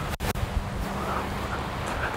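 Wind buffeting the microphone outdoors: a steady rumbling hiss, cut out twice for an instant near the start.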